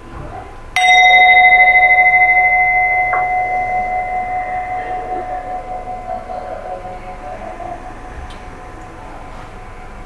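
A Tibetan singing bowl is struck once, about a second in. It rings on in a few steady tones with a gentle wobble and slowly fades over several seconds. The bowl marks the end of a meditation practice.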